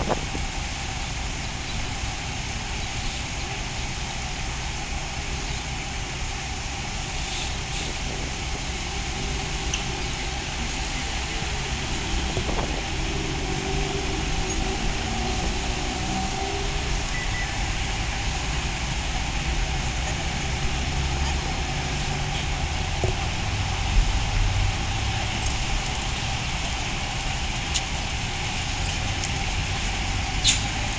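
Steady road-traffic noise: vehicle engines running with a low rumble that grows in the second half, and a few short knocks.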